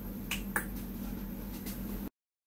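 Two short sharp clicks about a quarter of a second apart, over a steady low hum.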